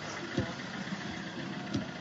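A car engine idling steadily, with two short low sounds partway through.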